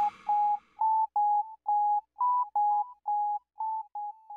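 Background music: a simple melody of about a dozen short, beeping electronic notes, separated by brief gaps and shifting slightly in pitch.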